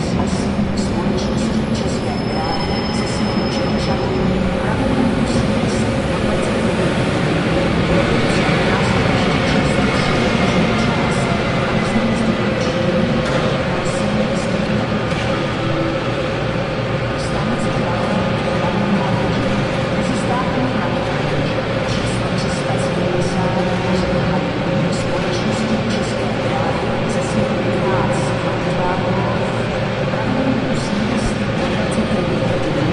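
Busy railway station ambience: a steady wash of train and platform noise with indistinct voices, scattered clicks and a steady hum. A faint high tone slides slowly down from about eight to thirteen seconds in.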